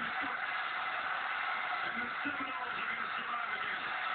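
College football TV broadcast heard through the TV speaker: a steady wash of stadium crowd noise with faint commentator speech underneath.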